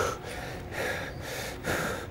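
A man taking short, sharp breaths, three in about two seconds, as he braces over a barbell before a bent-over row.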